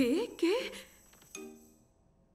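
A cartoon woman's voice giving two short wordless exclamations, each rising in pitch. About a second and a half in, a brief soft musical chord follows and fades out.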